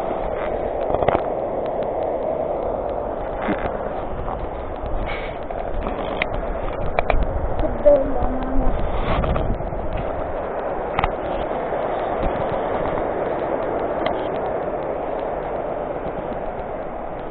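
Footsteps on a gravel trail, irregular scuffs and clicks, over a steady rushing noise throughout, heard through a muffled body-worn camera microphone.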